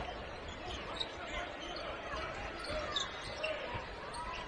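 Basketball game sound in an arena: the ball dribbling on the hardwood court under a steady murmur of crowd voices.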